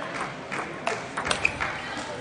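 Table tennis rally: a quick series of sharp clicks as the celluloid ball strikes table and bats.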